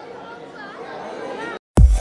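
Indistinct chatter of a crowd talking at once. It cuts off suddenly, and after a brief silence loud electronic music with a heavy beat starts near the end.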